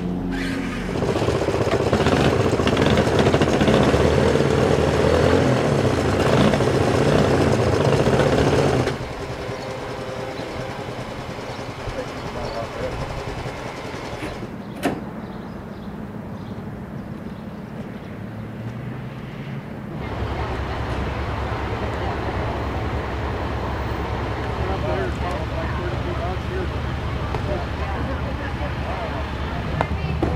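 Motor vehicle engines running with indistinct voices. The sound changes abruptly at about nine and twenty seconds, with a single sharp click near fifteen seconds.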